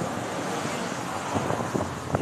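Steady wind noise on the microphone with road traffic in the background, and a man's voice heard briefly.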